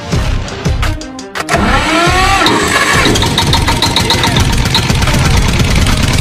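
A children's ride-on toy tractor's engine sound: a few knocks, then an engine starting and running steadily from about a second and a half in, with music over it.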